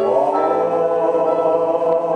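A gospel song: held, choir-like sung notes over a backing track, with a rise in pitch at the start.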